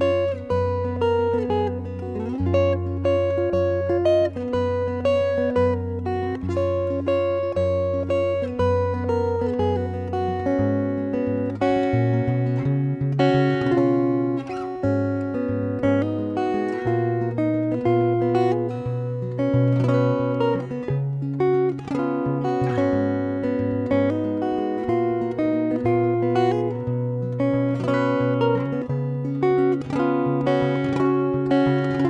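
Solo steel-string acoustic guitar, plucked: a sustained bass line under a melody of single notes, the bass moving up to a higher note about ten seconds in.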